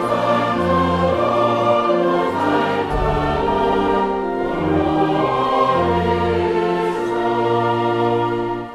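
Choir singing with brass band accompaniment: slow, long-held chords over a bass line that changes note every second or so.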